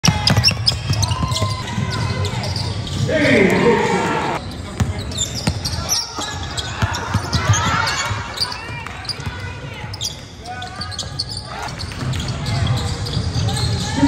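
Basketball game sounds in a reverberant gym: the ball bouncing on the hardwood court, with sneakers squeaking as players run and cut.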